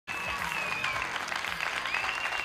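Studio audience applauding: a dense, steady spread of clapping, with one or two faint high held tones over it.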